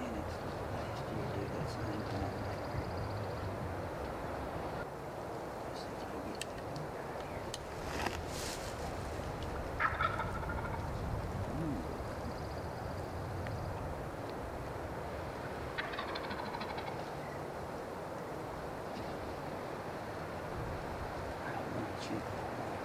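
Wild turkey gobblers gobbling: three short gobbles about eight, ten and sixteen seconds in, the one at ten seconds the loudest, over steady background noise.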